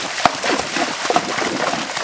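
Tennessee walking horses wading through a shallow creek, their hooves splashing and sloshing the water in an irregular stream of splashes, with one sharper knock just after the start.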